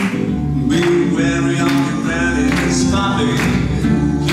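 Acoustic swing-jazz band playing live: strummed acoustic guitars, double bass and snare drum keeping a steady beat, with a melody line above.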